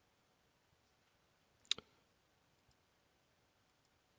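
A single computer mouse click, a sharp press followed at once by a fainter release, a little under two seconds in; otherwise near silence.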